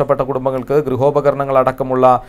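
Speech only: one voice talking without a break.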